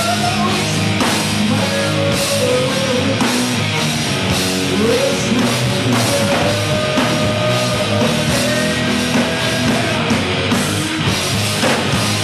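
Live rock band playing loud: electric guitars, bass and drum kit pounding on, with a vocalist singing into the microphone over them.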